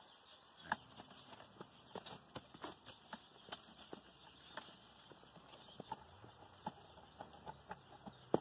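Faint, irregular clicks and knocks, a few a second, from a jogging stroller being pushed over bumpy dirt and grass.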